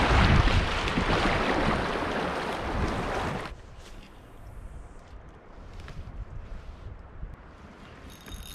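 Rushing water of creek rapids around a kayak, loud and steady, cutting off abruptly about three and a half seconds in. A quiet stretch follows, with faint water sounds and a few small ticks.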